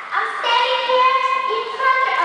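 A young girl singing a short phrase into a microphone, holding long, level notes.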